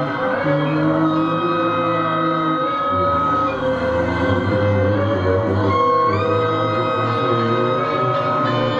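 Live experimental music from electric guitar and keyboard: long held tones over a low drone, with a deeper hum coming in about three seconds in and one tone sliding up in pitch about six seconds in.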